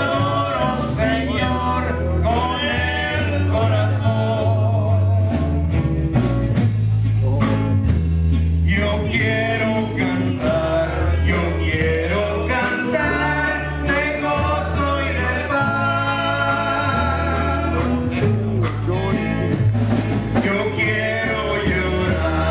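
Two men singing a gospel praise song into microphones, backed by a live band of drum kit and electric guitars with a strong, steady bass line.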